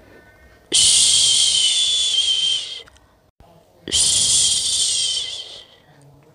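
A person shushing to lull a baby to sleep: two long "shhh" sounds, each about two seconds, starting abruptly and trailing off, with a pause of about a second between them.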